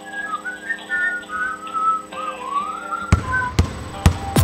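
Telephone hold music heard down a phone line: a thin, whistle-like single-note melody over a steady held chord. About three seconds in, sharp percussive hits start.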